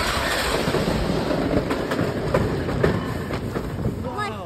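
Wooden roller coaster train rolling over wooden track, a steady rumble with scattered sharp clacks. It eases a little toward the end as the train slows into the covered brake run and station.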